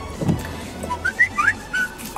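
A few short whistle-like chirps, each gliding up or down in pitch, come about a second in.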